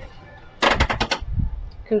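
A quick rattle of about seven sharp knocks in just over half a second, followed by a brief low rumble.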